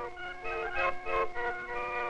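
Barrel organ music: a quick tune of short notes over a steady held tone.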